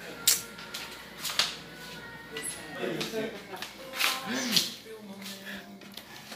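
Faint voices in a small room, with a few sharp clicks and knocks of handling and faint music in the background.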